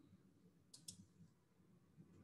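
Near silence broken by two faint clicks close together, about three-quarters of a second in: a computer mouse button clicked to advance the presentation slide.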